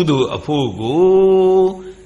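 An elderly Buddhist monk's voice in a chant-like sermon delivery, with a few short syllables and then one syllable drawn out on a long, steady note.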